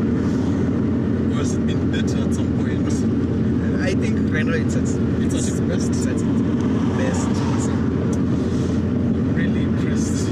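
Steady in-cabin engine and road drone of a turbocharged flat-four Subaru WRX STi wagon cruising at an even engine speed, with no revving.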